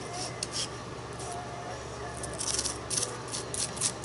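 Palette knife scraping and spreading modeling paste: a few faint scrapes at first, then a run of quick, louder scraping strokes in the second half.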